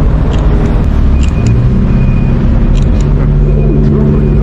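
Steady road traffic: a low rumble of car engines running and passing close by.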